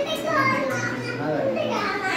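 A child's high voice and women's voices talking and laughing over one another.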